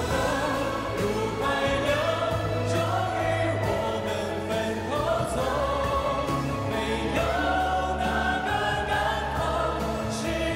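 A large mixed choir singing a slow Mandarin pop ballad together with a male lead voice, over sustained instrumental backing. The lines are sung in unison: 时光的河入海流，终于我们分头走.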